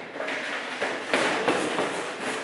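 A person's footsteps and close rubbing and bumping noises as the camera is handled: a run of short, uneven knocks and scuffs, louder after about a second.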